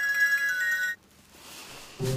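Mobile phone ringtone playing a short melody of bright, ringing notes, cut off suddenly about a second in as the incoming call is declined.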